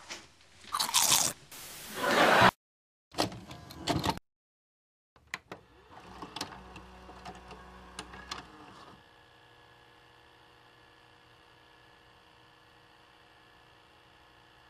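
Sound effects for a VHS-style logo animation. About a second in come loud bursts of static-like noise that cut off suddenly, then a run of sharp clicks and clunks like a tape deck loading and its buttons being pressed. From about nine seconds in, only a faint steady tape hiss with a low hum remains.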